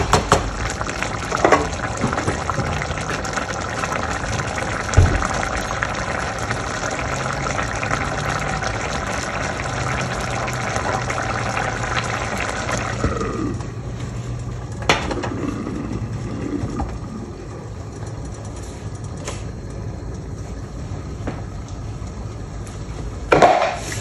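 Rice and chicken broth bubbling at a boil in a steel pot, a steady watery hiss as the grains cook down and soak up the water before being steamed on dum. About halfway through the bubbling drops quieter, with a few light knocks from the pot or utensils.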